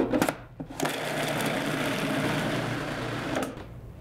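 A few clicks as the lid of a countertop food processor is fitted, then its motor runs steadily for about two and a half seconds, chopping diced onion and green pepper down to a purée, and stops shortly before the end.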